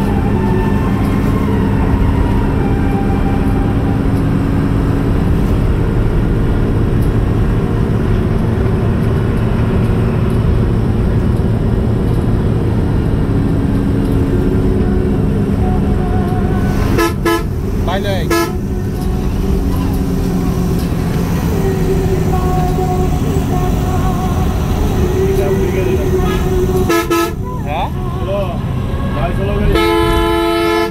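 A vehicle engine drones steadily as it drives at speed, with short horn blasts: two just past the middle, another near the end and a louder one at the very close.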